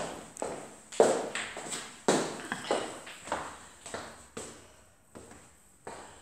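Footsteps on a laminate floor in an empty, unfurnished room, about one and a half steps a second, each with a short echo. They grow fainter towards the end.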